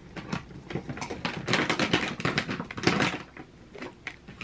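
Cat eating dry kibble from a dish right at the microphone: a fast, irregular run of crisp crunches and clicks, loudest through the middle.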